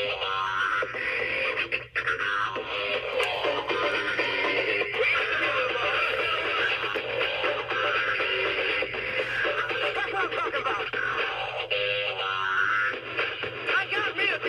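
Battery-operated animated novelty toy playing a song with singing through its small built-in speaker.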